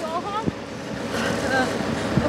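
Wind buffeting the microphone, with faint voices of people nearby and a single low thump about half a second in.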